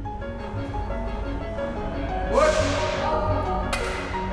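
Documentary background music with steady sustained notes. About two and a half seconds in, a swelling swoosh rises over it, and near the end there is a single sharp crack.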